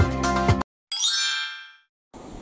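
Electronic background music with a steady beat cuts off about half a second in. After a brief silence, a bright chime sound effect rings and fades away over about a second.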